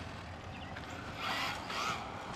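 Small brushless RC car running on asphalt at a distance: a faint rasping whine that swells briefly a little past halfway through.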